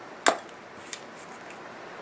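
A sharp tap of a small object set down on a work table a moment in, then a fainter tick about a second later, over quiet room tone.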